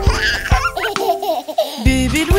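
A cartoon baby's giggling laughter over children's song music. The music's bass drops out briefly near the end.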